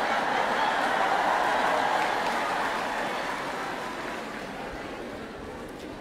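A large congregation laughing together at a punchline, swelling about a second in and then slowly dying away.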